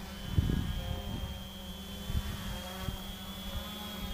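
Small multirotor drone's electric motors and propellers buzzing as it hovers, with a steady high whine over a low rumble and a few low thumps.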